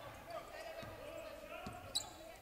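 Faint game sound in a gymnasium: a basketball being dribbled on the hardwood floor, a couple of soft thuds, under distant voices, with a short sharp click near the end.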